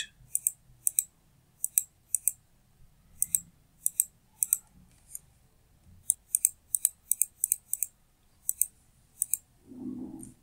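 Computer mouse button clicked repeatedly at an uneven pace, often in quick pairs, each click sharp and short.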